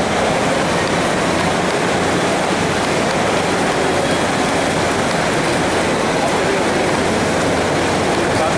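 Steady, loud rushing noise of a busy airport arrivals forecourt: crowd and traffic din with no clear voices standing out.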